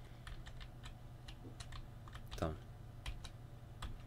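Computer keyboard keys tapped in an irregular series of faint clicks: the left and right arrow keys being pressed to step through the selected joint of an animation.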